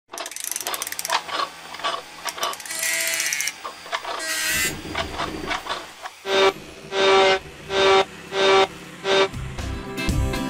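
Mechanical sound effects: a rapid run of clicks and ratcheting with a short whirring tone, then five loud, evenly spaced hits with a ringing tone, a little over half a second apart.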